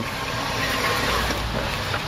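Tracked robot platform driving, a steady noisy running sound of its drive and tracks with a low rumble underneath.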